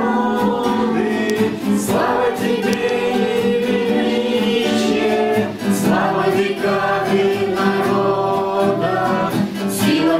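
A man singing while accompanying himself on a classical guitar.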